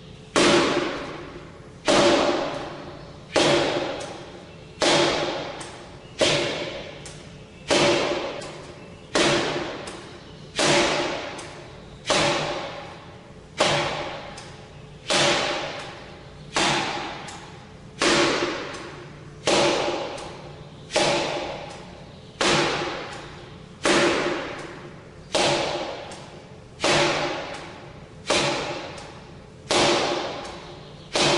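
Repeated arm strikes on a 'Kamerton Shilova' makiwara striking post for forearm conditioning, about one hit every second and a half. Each strike is a sharp knock followed by a short ringing tone that dies away.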